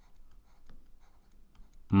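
Faint scratching and light taps of a stylus writing by hand on a tablet surface.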